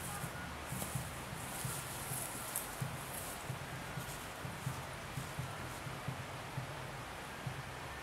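Footsteps swishing through long grass during the first few seconds, over a steady low outdoor rumble with soft, irregular knocks.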